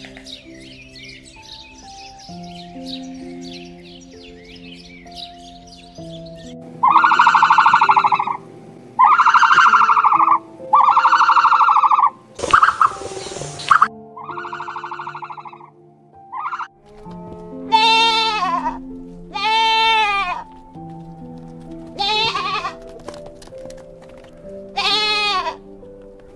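Young goat bleating over soft piano music: several wavering bleats, each about a second long, in the second half. Earlier there is a run of four loud, even calls of about a second each, with a short hiss among them.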